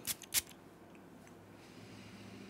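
Two quick sprays from a perfume bottle's atomizer, a fraction of a second apart, followed by a faint hiss.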